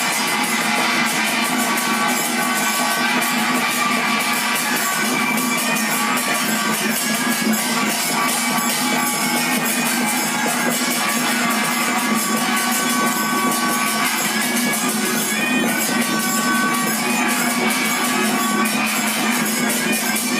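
Dao ritual ensemble playing continuously: a wind instrument carries a melody of held notes over rapid, unbroken strikes of a hand gong and metal percussion, with a steady low drone underneath.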